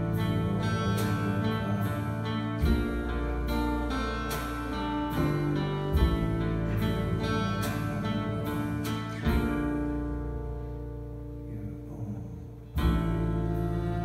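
Live band playing a slow song: deep guitar chords struck about every three seconds and left to ring, with single notes picked over them. The sound thins and fades about ten seconds in, then a loud chord comes back in near the end.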